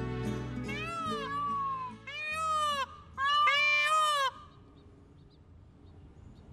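A peacock calling: a run of loud, wailing calls, each rising then falling in pitch, ending about four seconds in. Acoustic guitar music fades out under the first calls.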